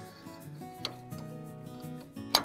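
Background music with steady held notes, and a single short click a little under a second in.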